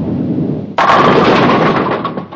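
Bowling ball rolling down a wooden lane, then crashing into the pins about three-quarters of a second in, the pins clattering and dying away.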